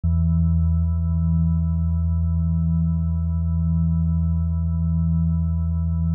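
Backing track opening on one held synthesizer chord: a steady low drone with a few fainter higher tones above it, unchanging throughout.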